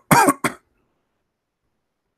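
A man clearing his throat with a couple of short coughs in the first half second.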